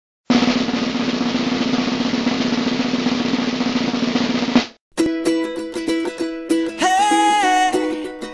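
A snare drum roll lasting about four seconds that cuts off suddenly, followed after a brief gap by plucked-string music, with a melody line coming in near the end.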